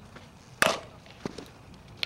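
A softball bat hitting a pitched fastpitch softball: one sharp, loud crack a little over half a second in, followed by a fainter, duller knock about half a second later.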